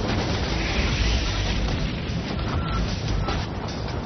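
Explosive demolition of a concrete bridge span: a continuous low rumble and roar of the blast and falling debris, easing off near the end, with background music underneath.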